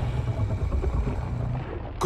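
Low rumble from the film's sound effects, dying away gradually.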